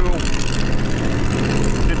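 An engine idling steadily, a low even hum with no change in pitch.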